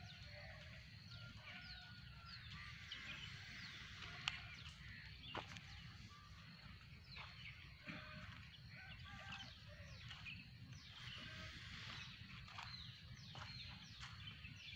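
Many birds chirping and calling, overlapping short calls throughout, faint, over a low steady rumble. A single sharp click comes about four seconds in.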